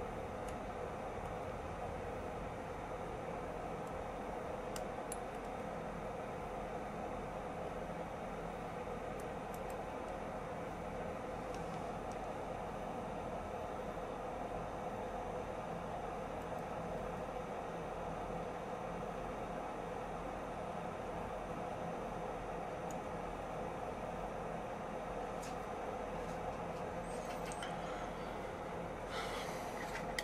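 Steady background hiss with a low hum, unchanging throughout, with a few faint small clicks from tweezers handling the phone's board and cables.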